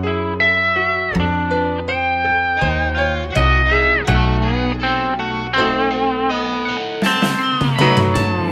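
Instrumental break of a country-rock song: a slide guitar leads with sustained notes that bend and glide between pitches, over bass, piano and drums. About seven seconds in, the band comes in harder with a bright cymbal wash.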